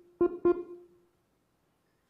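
Two short, sharply struck musical notes at the same pitch, about a third of a second apart, each dying away within about half a second.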